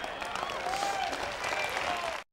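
Audience applauding, with a few voices calling out over the clapping.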